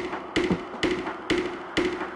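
Tech house DJ mix playing a steady beat of about two hits a second. Each hit carries a short pitched percussion note, and there is little deep bass under it.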